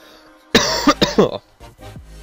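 A man coughing, three coughs in quick succession starting about half a second in.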